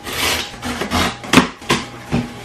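Box cutter blade slicing along a cardboard shipping box, a rasping scrape with two sharp snaps about two-thirds of the way through.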